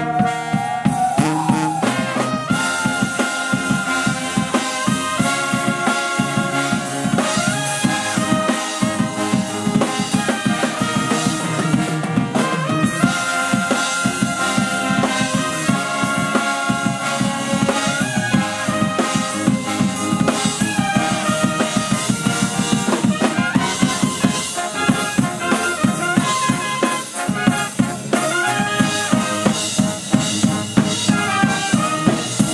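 A banda-style brass band playing live: trumpets, trombones, saxophones and a sousaphone over a drum kit with bass drum and cymbals, keeping a steady driving beat. A sliding brass note comes about a second in.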